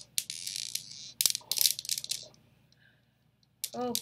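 Steel balls of a Newton's cradle clacking against each other, a quick series of sharp metallic clicks that stops about two seconds in.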